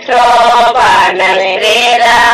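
Women singing a traditional Kannada Sobane folk song, a devotional wedding song, in a chant-like style. The held, wavering vocal line resumes right after a brief breath at the start.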